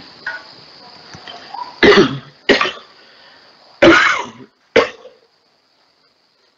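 A man coughing four times in short, sharp coughs over a voice-chat connection.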